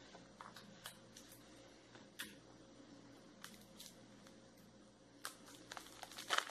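Near silence, with a few faint, short clicks and crinkles from a metallic truffle wrapper and tape being handled while a cone is wrapped.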